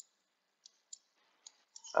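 Light clicks from a computer mouse, about six, irregularly spaced over two seconds.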